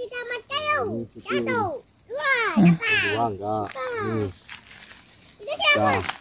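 Voices talking in words not made out, over a steady high-pitched drone of insects.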